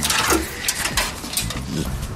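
Light clicking and rattling of loose electrical wires and their connectors being handled and pulled from the car, a string of short sharp ticks.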